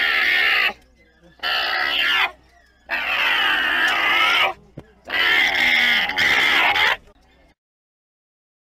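Alpaca giving four high, strained calls, each half a second to a second and a half long, with short pauses between them. The sound cuts off suddenly near the end.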